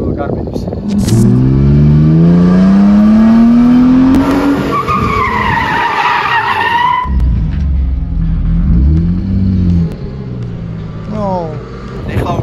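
BMW E36 drift car's engine revving up in one long steady rise, then its tyres squealing in a wavering high screech as it slides sideways. After that the engine runs lower and unevenly.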